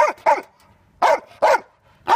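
Belgian Malinois barking on a guard command: four short, sharp barks in two quick pairs about a second apart.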